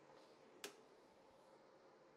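Near silence: room tone, broken by a single short, sharp click a little over half a second in.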